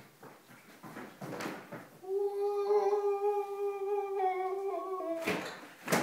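A single voice holds one long sung note, a mock heavenly "aaah", for about three seconds, starting about two seconds in and stepping down in pitch just before it stops. A short noisy rush follows near the end.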